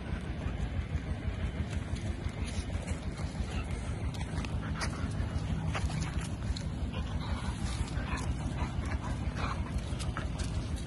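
Excited dogs jumping up and crowding close, with a few short dog noises and scattered scratches and knocks of paws and bodies. Under it all is a steady low rumble on the microphone.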